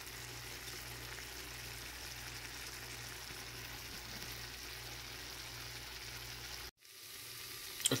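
Shrimp frying in a nonstick pan in a shallow pool of Italian dressing and lemon juice: a steady, soft sizzle with a low hum beneath it. The sound drops out for an instant about seven seconds in, then the sizzle resumes.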